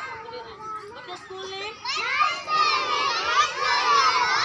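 A large group of young children shouting together in chorus, breaking in about halfway through after a quieter stretch with a single lower voice.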